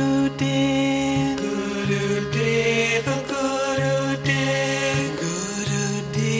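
Devotional bhajan: chanted singing over steady accompaniment, in held notes that change about once a second.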